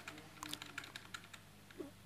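Faint computer keyboard typing: a quick, irregular run of light key clicks over the first second and a half, with a low steady hum underneath.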